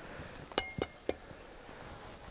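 Three short sharp clicks about a quarter of a second apart, with a faint brief high beep under the first two.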